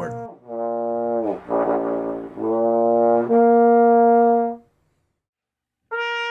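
Trombone played through a clear mouthpiece by a player with an upstream embouchure, the mouthpiece set low with more lower lip inside it. It plays a short phrase of held notes: the first slides down in pitch, a lower note follows, then a louder, higher note that stops sharply about two-thirds of the way through.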